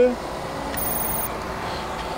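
Steady outdoor background hum and hiss, with a brief, very high-pitched electronic beep lasting about half a second near the middle.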